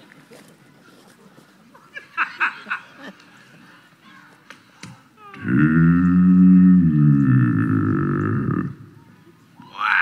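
A bass singer holds one very low, growling sung note for about three seconds from about halfway through, like a boat motor trying to start; it cuts off suddenly.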